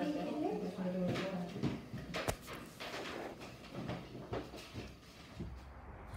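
Faint voices for the first second or two, then a few soft thumps of a child moving through a bridge kickover onto a sofa. A low steady rumble sets in near the end.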